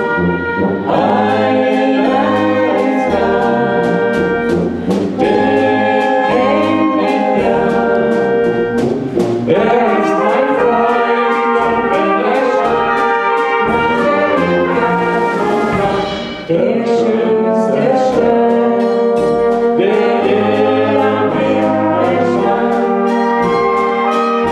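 A brass band playing a song in a steady rhythm, with a man and a woman singing a duet into microphones over the horns.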